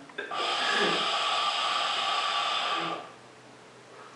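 A long, steady pull on a hookah hose: a hissing, breath-like rush of air drawn through the pipe for about three seconds, which then stops.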